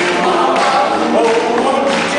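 Doo-wop vocal group singing in harmony over a live band of drums, keyboard and guitar, with several voices at once.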